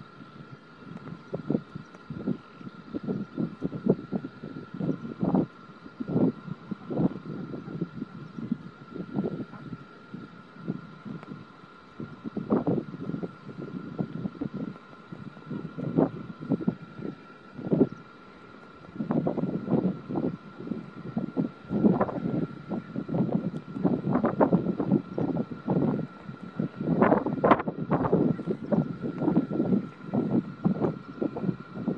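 Wind buffeting the microphone in irregular gusts that swell and drop, heaviest in the second half, over a faint steady high whine.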